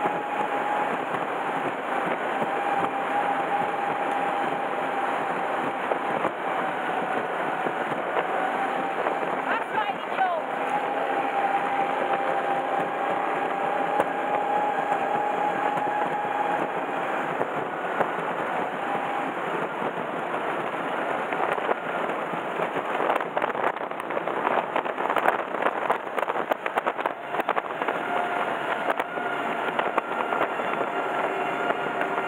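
Powerboat engine running hard at racing speed, with wind and water rush on the onboard microphone. Its whine dips briefly in pitch about ten seconds in and comes back up. In the last third, rapid knocks and thumps come as the hull bounces over the waves.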